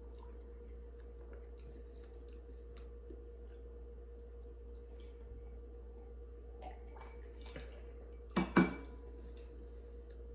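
Drinks being sipped from glass tumblers over a faint steady hum of room tone, with a few light ticks. Near the end come two sharp knocks close together: a glass tumbler set down on the table.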